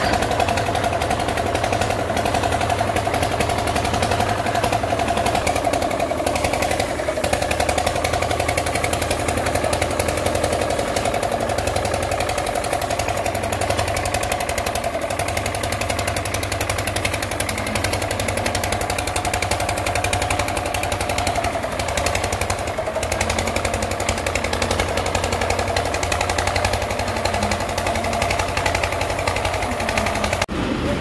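Engine of a road-tarring bitumen sprayer running steadily, with a constant whine over a fast, even chugging, as hot tar is sprayed onto the road.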